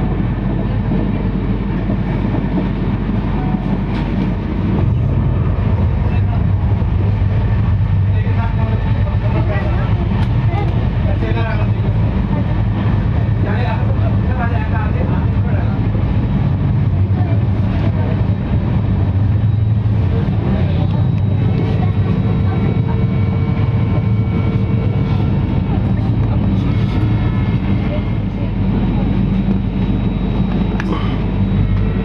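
Steady low rumble of a passenger train running, heard from inside the coach. It gets a little louder about five seconds in, and faint voices murmur through the middle.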